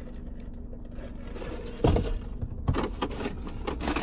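A steady low hum, then about halfway through a knock followed by rustling and light clicks as a paper takeout bag is reached for and handled.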